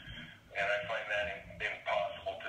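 A man's voice, drawn out and sounding thin, with little above the upper midrange.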